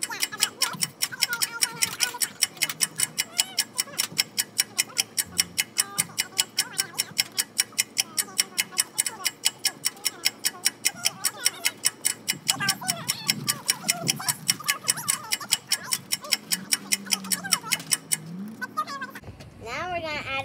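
A steady clock-like ticking sound effect, about four ticks a second, laid over a fast-forwarded stretch, with faint voices underneath. The ticking stops about two seconds before the end.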